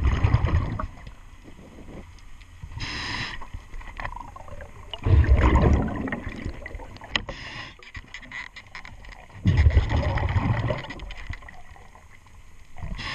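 A diver breathing underwater through a regulator. A short hiss comes on each inhale and a louder, deeper rush of exhaled bubbles on each exhale, with three exhales and two inhales alternating evenly.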